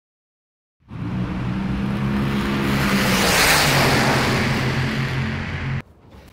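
A car engine running under a rush of noise that swells to its loudest about halfway through and then eases, like a car going by. It starts abruptly about a second in and cuts off sharply just before the end.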